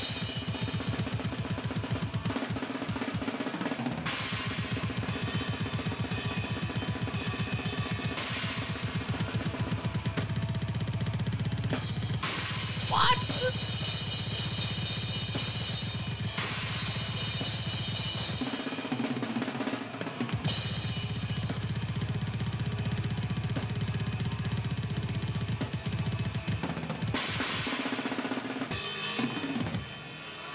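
Extreme metal drum kit from a close-miked drum-cam recording, played at very high speed: a continuous stream of double-kick bass drum strokes under snare and cymbals, with the band faint behind. The bass drum briefly drops out about three seconds in, about two-thirds of the way through and again near the end. About halfway through there is a single brief, loud high-pitched sound.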